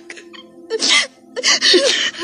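Two short, sharp tearful sobs, about a second in and near the end, over soft background music.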